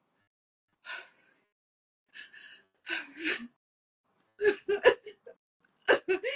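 A woman crying heard over a video call: breathy gasps and exhalations, then a burst of short, sharp sobs about four and a half seconds in.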